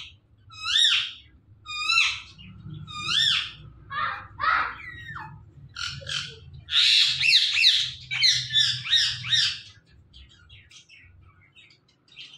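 Indian ringneck parakeet calling at close range. It gives short, sharp chirping calls about once a second, then a fast run of calls for about three seconds, and falls faint near the end.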